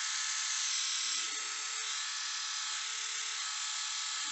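Philips YS521 rotary electric shaver running steadily with an even motor hum, powered by freshly soldered-in cheap replacement rechargeable batteries. It is holding its charge, with no sign of the flat-battery fault.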